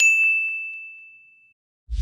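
A single bright ding, a bell-like chime struck once and ringing out over about a second and a half. Music with a heavy bass line starts near the end.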